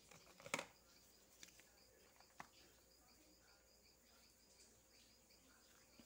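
Near silence broken by a few light clicks of pens being handled in a plastic pen cup, the sharpest about half a second in and two fainter ones a second or two later.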